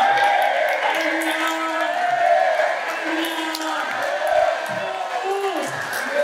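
Speech: a man preaching loudly into a microphone.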